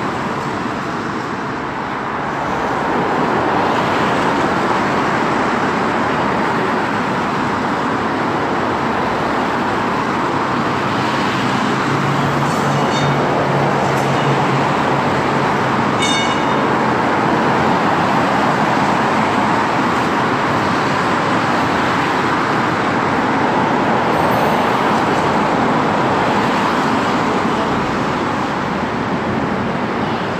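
Steady road traffic noise from cars passing on a multi-lane road beside the underpass, with a low engine drone for a few seconds around the middle.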